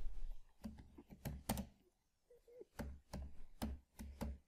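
Computer keyboard being typed on: a dozen or so separate, irregular key clicks, with a short pause about two seconds in.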